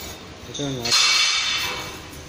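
Stainless steel sample canister of a washing fastness tester being lifted out of the tank: a metallic scrape and clink about a second in, ringing for under a second as it fades.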